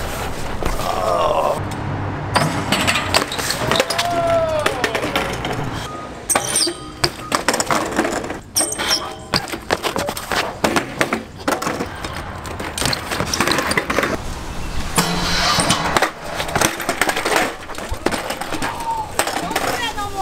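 BMX bikes and riders crashing on concrete, clip after clip: bikes clattering down, with many sharp knocks and scrapes and bursts of voices in between.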